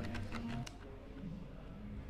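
Quiet indoor hall ambience between remarks, with a few faint clicks in the first half-second or so, then a low, steady hum.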